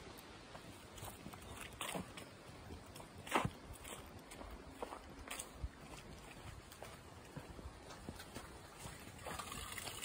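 Footsteps on grass and dry fallen leaves, with a few soft knocks and rustles over a faint outdoor background; the loudest knock comes about three and a half seconds in.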